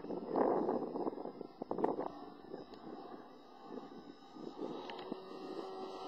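Radio-controlled aerobatic model airplane flying, its engine heard faintly under wind noise on the microphone. A faint steady engine note comes in near the end.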